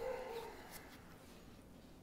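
A faint, brief high-pitched whine in the first half-second, falling slightly in pitch, then quiet room tone.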